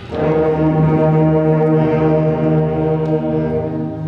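High school concert band playing a loud, brass-led sustained chord that comes in just after the start and is held for about three seconds, easing off near the end.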